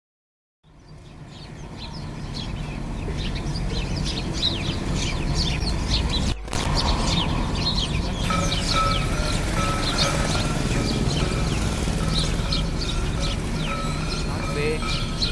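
A flock of house sparrows chirping together, many short quick chirps overlapping, over a low steady background rumble. The sound fades in over the first few seconds.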